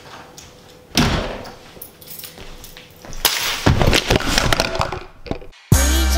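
A front door banging shut about a second in, followed by a couple of seconds of knocks and rattles. Music with a steady beat starts just before the end.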